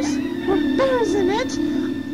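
A performer's voice making a string of short, rising-and-falling vocal cries over a steady held accompaniment tone.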